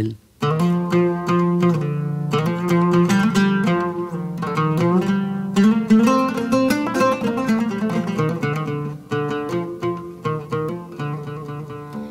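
Solo oud playing a busy, heavily ornamented phrase of quick plucked notes, starting about half a second in. The ornamentation strays so far from the hymn tune that the melody becomes hard to recognise.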